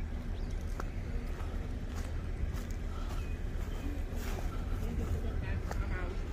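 Steady low rumble from a handheld phone microphone carried outdoors while walking, with faint distant voices and a few light clicks.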